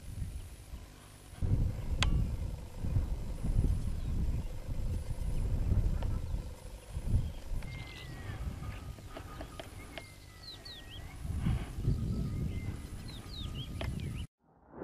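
Irregular low rumbling of wind on the microphone in an open field, with a few faint bird chirps in the second half.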